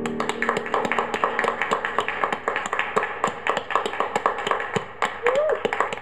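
A small group of people clapping, fast and irregular, with a short voiced call about five seconds in; the clapping stops abruptly at the end.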